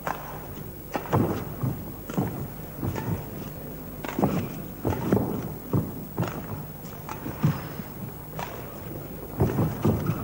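Badminton rally: rackets striking the shuttlecock and players' footsteps landing on the court, an irregular string of sharp knocks and thuds about once a second.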